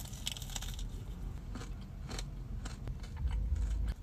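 Crunchy bites and chewing of a pastry Pop-Tart topped with Rice Krispies: a quick run of crisp crunches at first, then a few scattered ones, over a low rumble.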